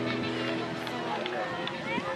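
Indistinct calling and shouting from several voices, players and spectators at a children's football match, overlapping with no clear words.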